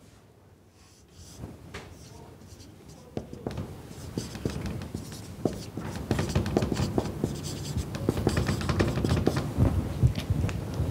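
Marker pen writing on a whiteboard: a run of short, irregular scratching strokes that start about a second in and grow louder and busier toward the end.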